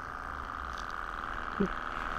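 Small hobby Stirling engine running steadily and turning its tiny belt-driven generator: a steady hum with no change in pace.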